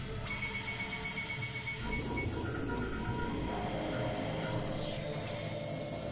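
Experimental electronic noise music: a dense, droning synthesizer texture. A rapidly pulsing high beep runs through the first two seconds, a lower pulsing beep follows briefly, and then steady drone tones take over.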